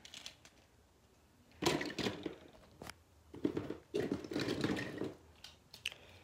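Rustling, crunching handling noise as toy monster trucks are rummaged from a container and turned in the hand, in two bursts with a few light clicks between them.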